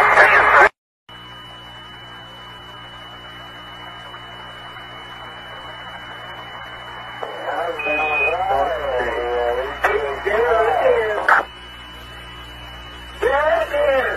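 Radio transmission: a steady static hiss with a thin high tone running through it, broken by stretches of radio voice chatter about seven seconds in and again near the end. The sound cuts out briefly about a second in.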